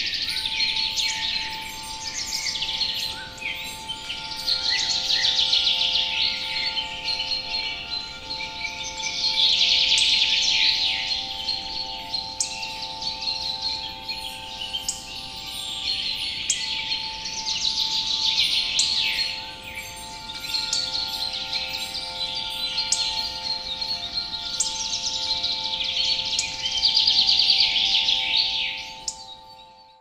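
Forest ambience of many songbirds singing and chirping in overlapping swells every few seconds, over a steady held tone underneath. It fades out near the end.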